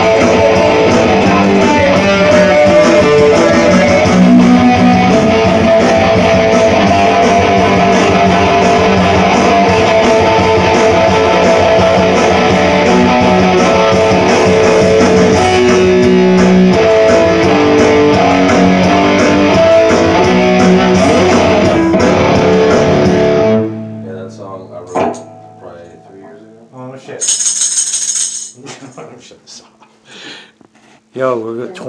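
Electric guitar played loud with a man singing over it. The music stops abruptly about 23 seconds in, leaving quiet scattered sounds and a brief hiss near the end.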